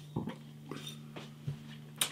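A few faint clicks and knocks from a glass beer bottle being handled and lifted, over a steady low electrical hum.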